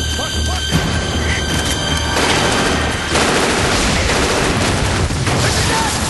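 Sustained rapid gunfire, a dense crackle of many shots, breaking out about two seconds in and continuing, with a tense dramatic music score underneath.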